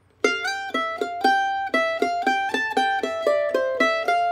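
F-style mandolin played with a pick: a quick single-note fiddle-tune melody in C major, the opening two-measure phrase of the tune's C part played in the higher octave. It starts with a slide on the E string from the first to the third fret, and the notes come several a second before ending on a held note.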